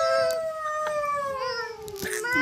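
One long, unbroken vocal sound in a high voice: the pitch lifts slightly, then sinks slowly over about two and a half seconds, like a drawn-out howl.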